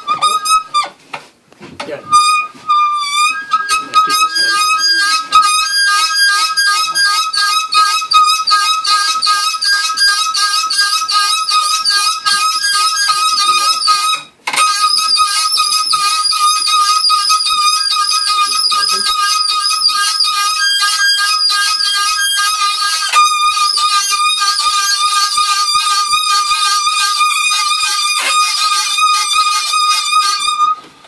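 Wooden crank-style fire drill (the Gaucho fire drill) spun continuously in one direction in a wooden hearth board, its tip squeaking at a steady high pitch with a fast flutter; the squeal breaks off briefly near the start and again about halfway through. The squeaking is the drill riding on a glazed sheen of compressed wood that it has to break through before it gets real friction.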